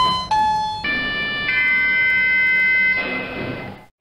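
An electronic jingle: two short descending synthesizer notes, then a held chord of several steady tones that swells about a second and a half in and fades out.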